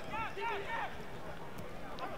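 A few faint shouted calls from rugby players on the field, mostly in the first second, over the low background noise of a stadium.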